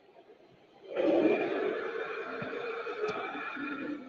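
Recorded monster vocal effect played through the speaker of a Mutant Legend animatronic Halloween prop. It is one long held cry that starts suddenly about a second in and slowly fades.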